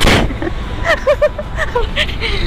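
Steady low street-traffic rumble, with a brief loud rush of noise at the very start and then short repeated laughs about a second in.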